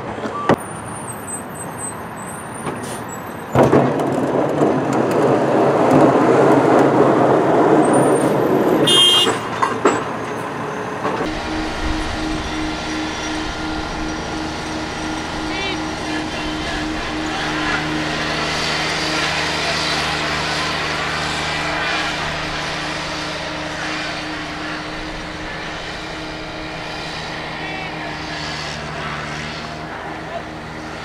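Snowplow vehicles on a cone course. First a pickup plow truck, with a loud rushing noise lasting about five seconds. Then a small riding tractor fitted with a front plow blade, its engine running at a steady, even pitch.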